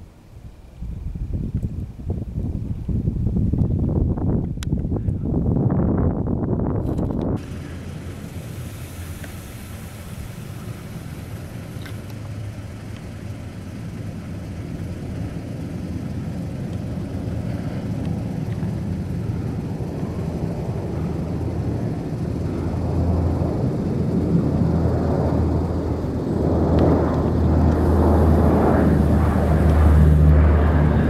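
Four-engine turboprop drone of a low-flying C-130 Hercules, with a steady low propeller hum that grows louder as the aircraft approaches and is loudest near the end. Before it, for the first seven seconds, a loud rushing noise that cuts off abruptly.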